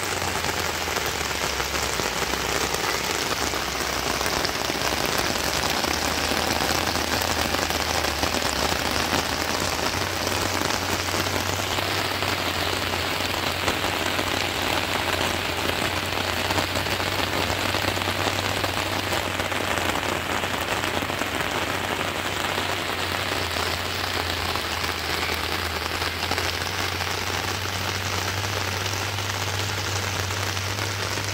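Steady rain falling on garden plants, an even hiss.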